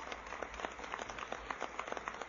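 A pause in an old speech recording: faint, irregular crackle of short clicks, several a second, over a low hum.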